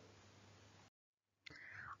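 Near silence: faint room hiss that drops out to dead silence at an edit about a second in, then a faint, soft voice sound near the end.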